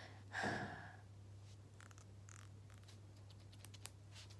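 A short breathy exhale close to the microphone, then scissors snipping: a string of light, sharp clicks in the second half, over a steady low hum.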